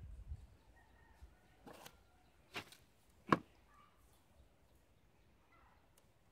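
Handling noise from hands working a guava cleft graft: three short, sharp clicks or scrapes in quick succession, the third and loudest about halfway through, over a quiet background.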